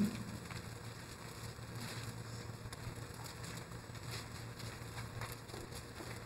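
Faint rustling and soft ticks of Bible pages being turned, as the congregation looks up Matthew chapter 16, over a low steady room hum.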